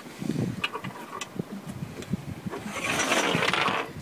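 Small clicks and knocks of hands handling and fitting parts onto a man overboard pole, then a rasping hiss lasting about a second and a half near the end.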